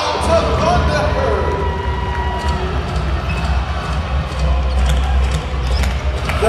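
A basketball bouncing on a hardwood court during play, heard as irregular sharp knocks over arena music with a steady heavy bass.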